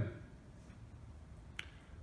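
Quiet room tone with a low hum, broken by one short, sharp click about one and a half seconds in.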